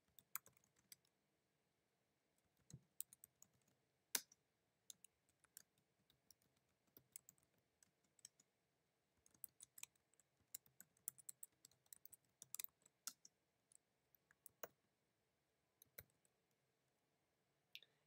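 Faint computer keyboard typing: scattered single keystrokes at irregular intervals, coming quicker for a few seconds past the middle.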